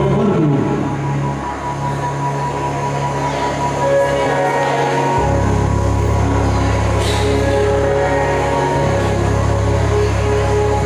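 Slow instrumental music of long held chords over a steady bass, the bass moving down to a lower note about five seconds in.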